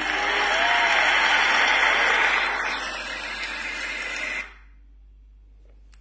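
Audience applause, loud and even, easing slightly about halfway through and then cutting off suddenly about four and a half seconds in.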